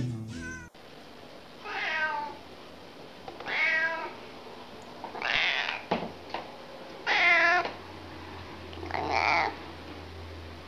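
Domestic cat meowing in its sleep: five short calls, about two seconds apart, each bending in pitch.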